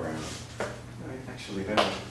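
A man's voice speaking indistinctly over a steady low room hum, with one sharp knock near the end.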